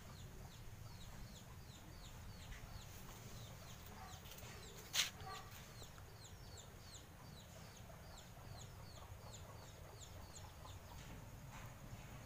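A bird chirping over and over, faintly: short high falling chirps at an even pace of about three a second. One sharp click about five seconds in.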